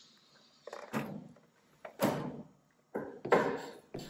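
Three knocks and clicks about a second apart, the last the loudest, from the electric motorcycle's ignition key switch being worked as the dashboard powers on.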